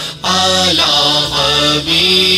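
A male naat reciter singing a devotional qaseeda in two long melodic phrases, over a steady backing drone.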